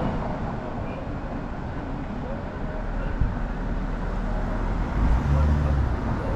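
Road traffic noise with faint voices in the background. About five seconds in, a vehicle's low engine hum comes up and grows louder.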